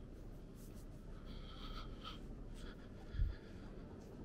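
Quiet outdoor ambience: a steady low rumble of wind on the microphone, with faint short high squeaks in the background. A brief low bump of wind a little over three seconds in is the loudest moment.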